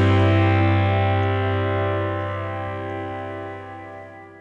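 The closing guitar chord of the song, left ringing and steadily fading away.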